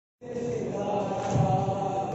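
A crowd of mourners chanting a noha, an Urdu Shia lament, together. The voices cut in abruptly just after the start.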